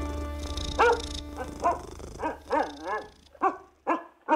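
A dog barking in a run of short barks, about two a second, each rising and falling in pitch, while the tail of banjo music fades out in the first second.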